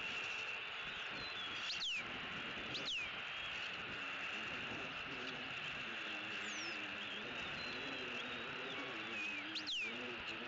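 A few short bird chirps, each sliding sharply downward in pitch, about two and three seconds in and again near the end. They sit over a steady high insect-like drone.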